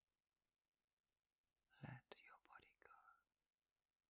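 Near silence, broken near the middle by a brief whispered phrase in a woman's voice, about a second and a half long.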